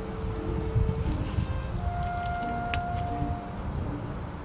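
Wind buffeting the microphone: a gusty low rumble, with a few faint held tones above it.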